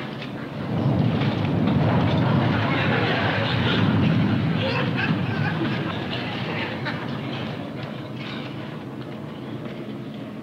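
Airliner cabin shaking in turbulence: a rumble with rattling that swells about a second in and eases off over the next several seconds.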